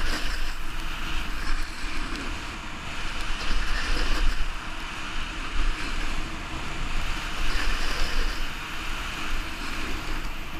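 Snowboard sliding over snow, a steady scraping hiss that swells every few seconds as the board carves turns, with wind rumbling on the helmet camera's microphone.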